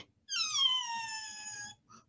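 A single high-pitched whine that starts just after the beginning and falls steadily in pitch for about a second and a half, fading as it goes.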